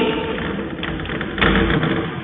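Chalk tapping and scraping on a blackboard, with a louder knock about one and a half seconds in, in a reverberant room.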